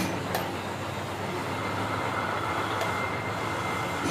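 One sharp tap on a piston being driven through a ring compressor into a diesel engine's cylinder bore, over a steady background rumble with a faint high whine.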